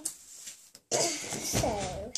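A person coughing: a sudden harsh cough about a second in, trailing off into a short voiced sound whose pitch falls.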